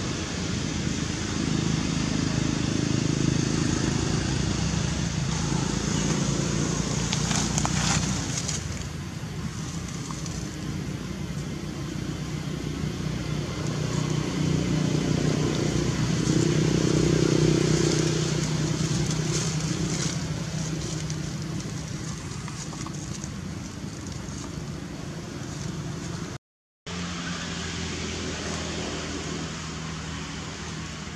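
Low steady rumble of distant motor traffic that swells twice, with faint rustling and crackling in dry leaves. A brief total dropout comes near the end.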